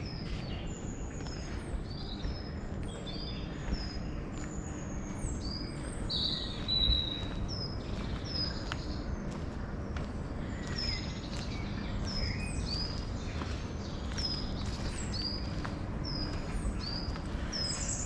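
Several woodland birds singing, a steady run of short high chirps repeating throughout, over a low steady rumble and soft footsteps on a dirt path.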